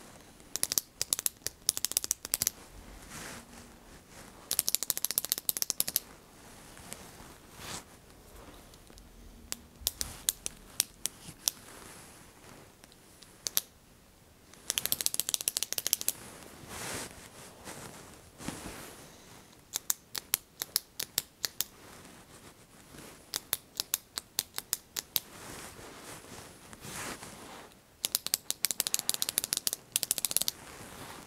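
A retractable pen's button clicked rapidly against a bare back, in bursts of a second or two, with pauses of a few seconds between bursts. The clicks serve as a light percussive spinal adjustment.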